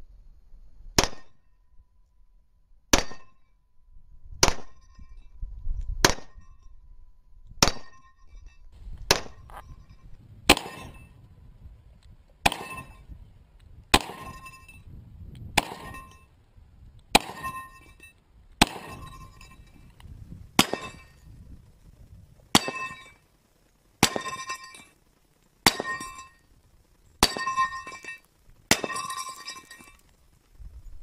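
A 10mm pistol fired slowly and steadily, about eighteen shots roughly a second and a half apart, each hit followed by the brief ringing clang of a steel plate target.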